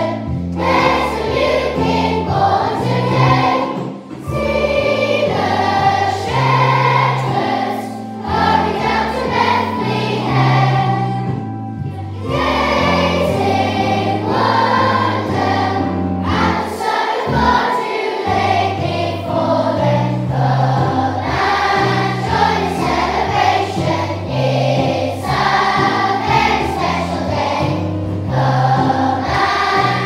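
A hall full of schoolchildren singing a Christmas carol together over a recorded backing track.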